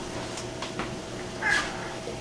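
A small dog waiting behind a pet gate gives one short, high-pitched whine about one and a half seconds in, with a few faint clicks before it.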